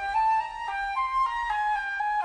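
Instrumental music: a solo woodwind line, flute-like, playing a melody of short stepping notes, about three or four a second, in the orchestral arrangement of a folk song.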